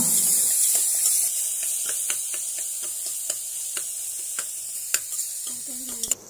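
Sliced onions and ginger paste sizzling in hot ghee and oil in an aluminium pressure cooker, stirred with a metal spoon that clicks and scrapes against the pot wall. The sizzle fades gradually.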